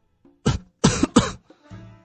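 A man coughing three times in short, sharp bursts: one about half a second in, then two in quick succession around one second. These are staged warning coughs, acted out to hush someone who is saying too much.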